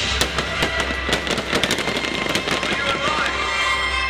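Fireworks crackling and popping in a rapid dense flurry over loud music, the crackle dying away near the end.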